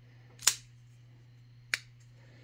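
Emerson folding knife being flipped open: a sharp metallic snap as the blade swings out and locks, then a lighter click near the end. The liner lock has been dressed with pencil graphite against lock stick.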